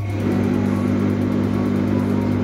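Electrolux tumble dryer's drum motor switched on and running with a steady hum as the drum spins fast. It has just been fitted with a new 8 µF run capacitor; before that the motor would not turn, only ticked, and the faulty capacitor was the cause.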